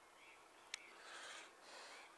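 Near silence: faint outdoor background hiss, with one brief soft click about three-quarters of a second in.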